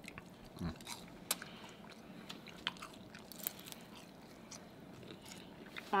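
Close-miked chewing of crispy fried Chinese takeout food, with scattered sharp crunches and a short closed-mouth "mm" about half a second in.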